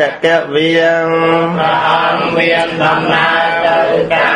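A Buddhist monk's voice chanting in long, drawn-out melodic notes with slow bends in pitch, a Khmer Buddhist chant. A brief breath break falls just after the start.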